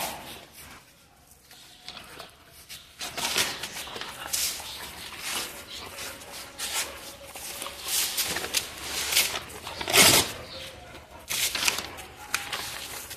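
Dogs tussling over torn brown paper: irregular crackling and rustling of the paper and scuffling, starting about three seconds in, with one loud sharp burst near the end.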